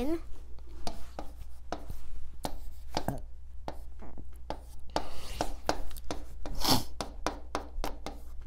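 Marker tip tapping and scratching on an illuminated writing board as words are written by hand, an irregular run of short ticks and rubs.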